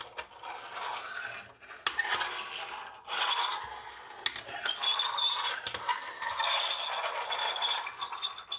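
Stationery (plastic highlighter pens, a plastic protractor and a small metal pencil sharpener) being slid and set down on a tabletop by hand: rasping scrapes with a few light knocks as the pieces are put in place.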